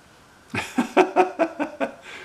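A man chuckling: a run of about eight short laughing breaths starting about half a second in and lasting about a second and a half.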